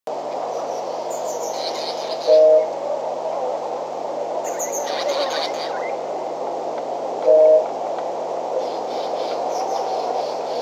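Bush ambience from a wildlife camera microphone: a steady hiss with high bird chirps scattered through it, and two short, loud, steady-pitched notes about five seconds apart.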